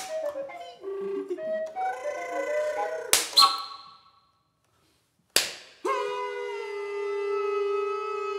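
Contemporary chamber music for large recorder and voice: short, broken pitched notes, then two sharp percussive smacks about three seconds in, a brief silence, another sharp smack, and finally one long held low recorder note.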